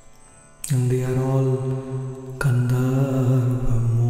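A man's low voice chanting in long, held notes, beginning about half a second in, with a brief break and a second held phrase starting about two and a half seconds in.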